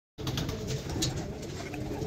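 A flock of domestic pigeons cooing together, a low overlapping cooing with a few light clicks scattered through it.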